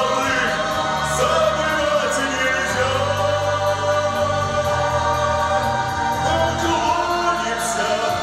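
A man singing solo through a handheld microphone with a mixed choir singing along, over an instrumental accompaniment whose bass notes change every couple of seconds.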